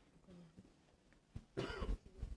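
A person coughing near the end; before that, only faint room sound.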